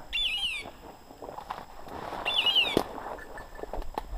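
A short, high, descending call repeats about every two seconds over the rustle of someone pushing through brush. A single sharp snap comes about three quarters of the way through.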